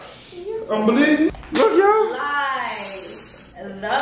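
Wordless pained cries from a man just jabbed in the arm with a sharp object, drawn-out and wavering in pitch, with a hiss partway through.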